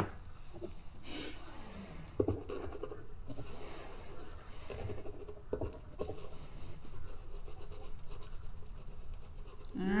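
Gloved hand rubbing oil stick paint into carved lines on an encaustic wax painting: soft, faint scrubbing and scratching, with a few small knocks, the clearest about two seconds in.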